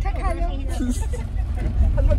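Voices and laughter inside a moving car's cabin, over a steady low engine and road rumble.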